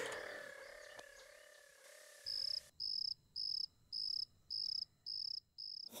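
A held music note fading away, followed a little over two seconds in by a cricket-chirp sound effect: about seven short, even, high chirps, roughly one and a half a second, with dead silence between them.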